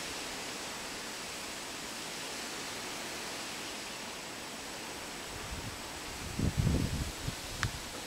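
Steady outdoor rushing hiss with no distinct calls. A few low rumbling buffets, like wind on the microphone, come about six to seven seconds in, and a short click comes near the end.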